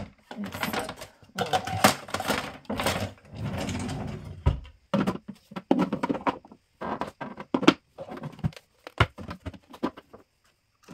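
Plastic blender cups, lids and small kitchen appliances clattering and knocking as they are packed into a kitchen drawer, with irregular knocks and stretches of rustling and sliding between them.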